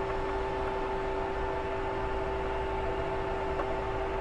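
Steady hum and hiss from the electrical cabinet of a powered-on Doosan CNC lathe, with two constant tones, one low and one higher, over cooling-fan noise. The machine is left running during the turret servo battery change.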